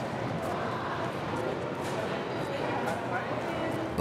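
Busy subway station ambience: murmur of many voices and passing footsteps over a steady low hum.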